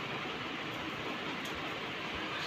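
Steady, even background hiss with no distinct sound events: room tone.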